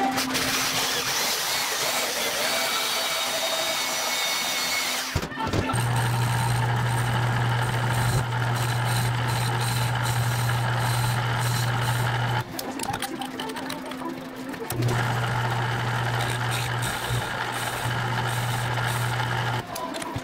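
Portable bandsaw cutting through stainless steel tubing for about five seconds. Then a metal lathe runs with a steady low hum while turning a stainless tube, with a short quieter break about two-thirds of the way through.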